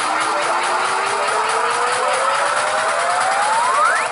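A music riser: one synth tone glides upward in pitch, slowly at first and then faster, over a hissing noise wash, and cuts off at its peak near the end.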